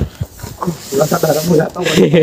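People talking, with a soft hiss under the first moments.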